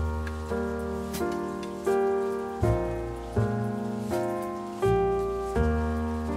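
Background piano music: slow chords, a new one struck about every three-quarters of a second and left to fade.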